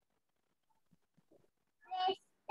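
Near silence for most of the time, then near the end a brief, rising, pitched vocal sound from a young girl as she starts to speak.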